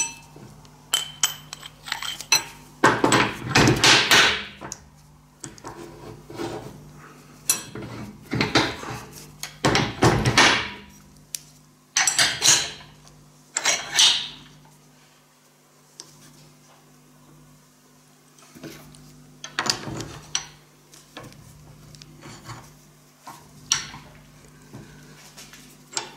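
Steel parts of a UB100 bar bender being handled: irregular metallic clinks and knocks as the die block is swapped for an eccentric block and round steel bar is set in place. There is a quieter stretch a little past the middle.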